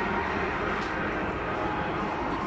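Steady background noise of an indoor hall with no distinct events.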